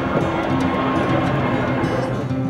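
Diesel passenger train running at a platform while passengers board, with music playing over it.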